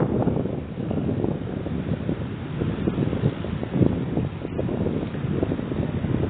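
Strong wind buffeting the microphone: a low, gusting rumble that swells and drops unevenly.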